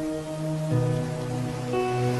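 Soft instrumental music with long held notes that change a few times, over the steady hiss of rain falling on pavement.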